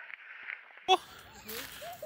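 Faint wind and rolling noise of a mountain bike on a forest track. About a second in it cuts off sharply, giving way to a quieter outdoor background with a brief "oh" and faint voices.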